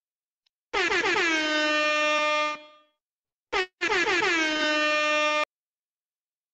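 Air horn sound effect sounding twice, each blast about two seconds long with its pitch dropping at the start and then holding steady, with a short blip between them; the second blast cuts off suddenly.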